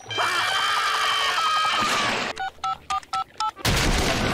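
Cartoon sound effects: a noisy sound for about two seconds, then five quick two-tone telephone keypad beeps as a number is dialled, then a sudden loud crash as a battering ram smashes through the ceiling near the end.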